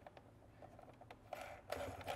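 Faint handling noises of plastic parts: a few light clicks and two brief rustles in the second half as tubing and fittings are handled.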